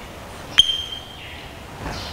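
Chalk on a blackboard: one sharp tap about half a second in, followed by a brief high-pitched ring, as a word is being finished.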